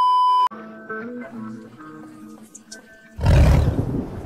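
A TV colour-bars test-pattern beep: one steady high tone that cuts off after about half a second. Faint held tones follow, and about three seconds in a loud roaring sound effect comes in.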